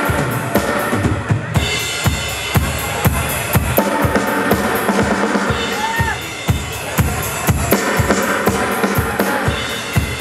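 Live rock band playing: a drum kit keeps a steady beat of bass drum, snare and cymbals. About a second and a half in, the rest of the band comes in and the sound fills out.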